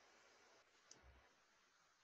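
Near silence on the call line, with one faint click just before a second in.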